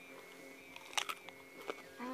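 A bite into a slice of raw golden beet: one sharp crunch about a second in, then a smaller click shortly after.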